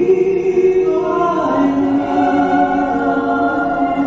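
Mixed choir of men and women singing slow, sustained chords, the held notes changing together about every second.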